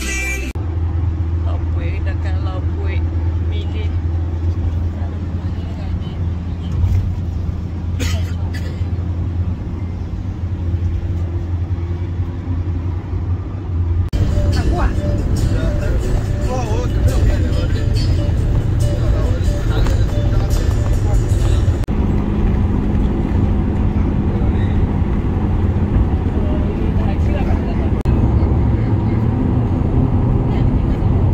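Steady low rumble of a van's engine and road noise heard from inside the cabin. The rumble changes abruptly twice, about a third and two-thirds of the way through, with faint voices in the background.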